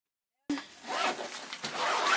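Zipper on a fabric storage bag being pulled open in a few quick pulls, with the fabric rustling. It starts abruptly about half a second in.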